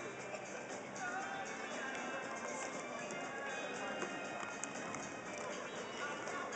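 Background music playing over the chatter of a crowd in a large hall.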